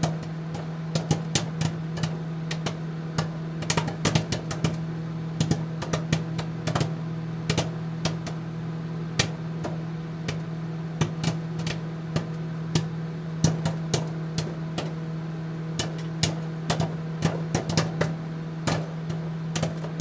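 Popcorn popping in a running microwave oven: irregular sharp pops, a few a second, over the oven's steady low hum.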